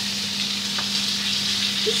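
Salmon fillets frying skin side down in a hot pan: a steady sizzle as the skin crisps.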